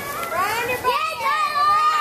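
Young children's high-pitched shouting and cheering, several voices overlapping.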